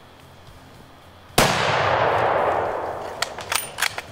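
A single scoped hunting rifle shot about a second and a half in, its report echoing through the forest and dying away over more than a second. Near the end come a few sharp metallic clicks as the bolt is worked to chamber another round.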